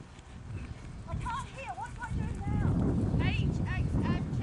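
Hoofbeats of a horse moving on a sand arena, with background calls or voices. A louder low rumble comes in about halfway through.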